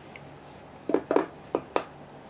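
Four short, sharp taps on metal, in two quick pairs about a second in, typical of fingers or knuckles rapping a solid metal part of the flight recorder.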